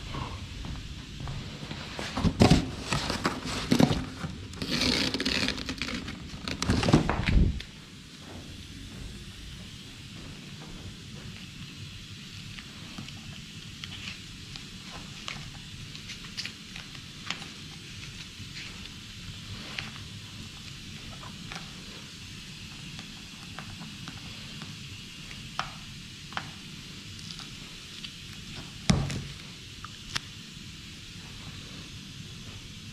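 Masking tape being handled and pressed onto a car's trunk lid: about two seconds in, some five seconds of loud rustling and tearing, then soft crackles and clicks, with one thump near the end.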